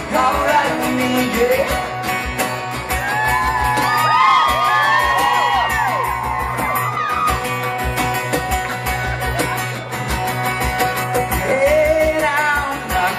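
A male singer performs live, singing over a strummed acoustic guitar, with a run of gliding, wavering vocal notes in the middle.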